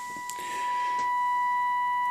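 Steady 1 kHz test tone, with a fainter overtone, from a Trio 9R-59D communication receiver's loudspeaker as it receives a 455 kHz IF test signal modulated with a 1 kHz tone for IF alignment. A soft rushing noise comes up about half a second in.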